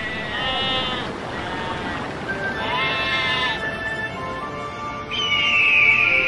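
Sheep bleating twice, with wavering calls, over background music. Near the end an eagle gives a high, falling cry.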